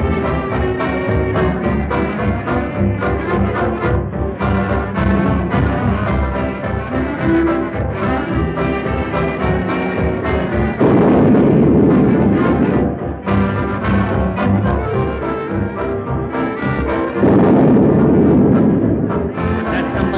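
Ballroom dance-band music led by brass, playing steadily in a regular dance rhythm. Two louder, fuller passages of about two seconds each come around eleven and seventeen seconds in.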